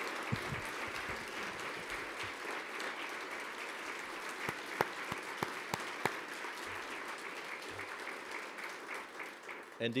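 Audience applauding steadily, a dense patter of many hands clapping that tails off slightly near the end.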